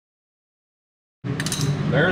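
Dead silence for just over a second, then the sound cuts in abruptly with a steady low hum and a quick cluster of sharp clicks.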